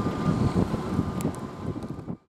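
Wind buffeting the microphone over a low outdoor rumble, gradually getting quieter.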